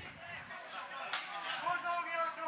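Men's voices shouting on a football pitch, with one sharp thud of the ball being kicked a little over a second in.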